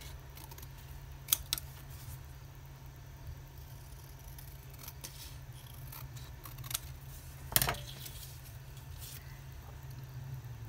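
Scissors cutting a strip of printed paper: a handful of separate sharp snips and clicks, the loudest about three-quarters of the way through.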